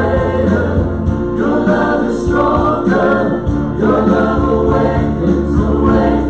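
Live worship band: several voices singing together into microphones over keyboard and acoustic guitar, with steady sustained phrases.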